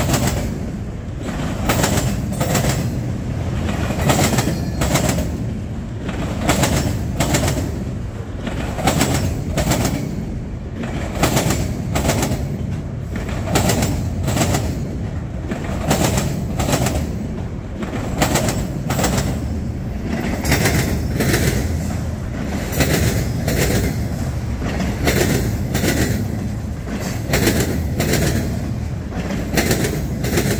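Freight train of autorack cars rolling past close by: a steady low rumble with a running clickety-clack of steel wheels over rail joints, the clicks coming a few times a second, often in pairs.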